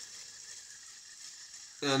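Baitcasting reel being cranked, winding 50-pound braided line off a line spooler onto its spool: a steady, soft whirring hiss. Speech starts near the end.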